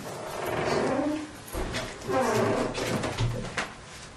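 Whiteboard marker squeaking and scraping on the board as a line of words is written, in short strokes with a sharp click near the end.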